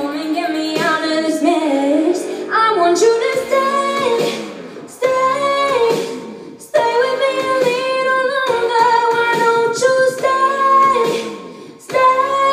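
A young woman singing a pop ballad into a microphone, in long phrases of held notes that slide between pitches, with short breaths between them.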